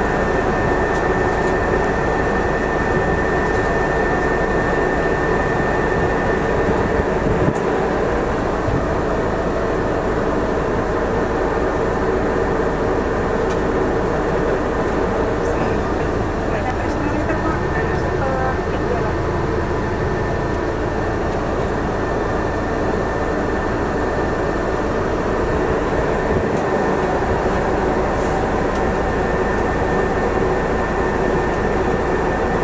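Steady, unbroken drone of a vehicle's engine and air conditioning running, with faint indistinct voices under it.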